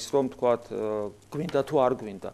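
A man's voice speaking in short phrases, with a long drawn-out hesitation vowel held on one pitch in the middle.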